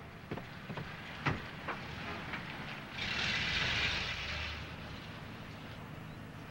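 A few light knocks, then a car moving off: a hiss lasting about a second and a half, with a low engine rumble beneath it.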